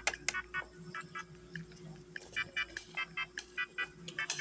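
Sounds of a meal: a couple of sharp clicks of a spoon against a plate just after the start. Behind them runs background music of short, repeated high notes.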